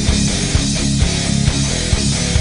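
Hard rock song playing: distorted electric guitars over a steady drum beat.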